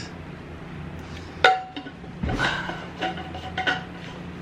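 Clinks and knocks of an insulated food jar's lid and its folding metal spoon being handled: a sharp clink about one and a half seconds in, then a few short ringing clinks.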